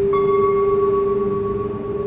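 Background music: a steady, held drone tone with a single bell-like chime struck just after the start, ringing and fading away over about a second and a half.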